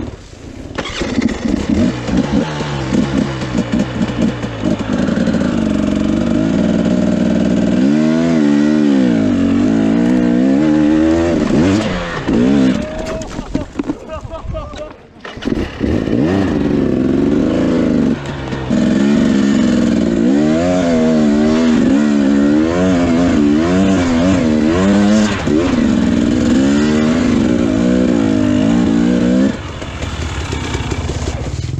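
Two-stroke 250 cc enduro motorcycle engine (2017 Husqvarna TE 250) revving up and down repeatedly under load on a steep, rough dirt climb, its pitch rising and falling with the throttle. About halfway through, the engine drops away for a second or so before picking back up.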